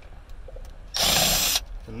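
Cordless drill/driver spinning once for about half a second, backing out a Torx screw.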